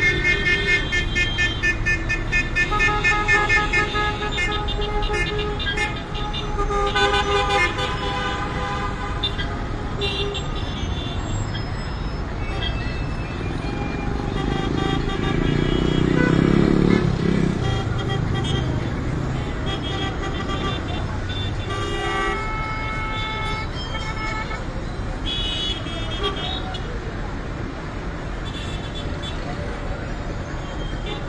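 Car horns honking again and again, many overlapping, over the steady rumble of heavy stop-and-go traffic in a jam. The honking is thickest in the first ten seconds, and a louder low engine rumble swells and fades about halfway through.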